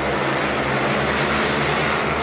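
Several 500 cc single-cylinder speedway motorcycle engines running together at race speed, a steady, unbroken engine noise.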